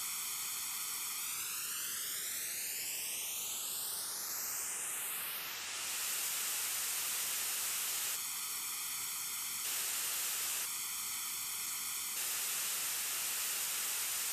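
Noise test signal from a studio monitor, picked up by two microphones a foot apart and summed, heard as a comb-filtered, hollow hiss. Over the first few seconds the comb notches sweep upward and disappear as a fractional delay compensates the time difference, leaving plain, even hiss. The comb-filtered sound comes back twice near the middle, each time for about a second and a half.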